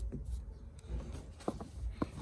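A few light knocks and rustles of objects being handled and set down on a table mat, with low rumble from handling.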